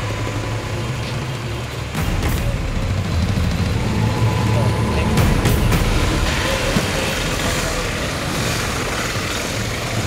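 Police motorcycle and pickup truck engines running, a steady low rumble that gets louder about two seconds in.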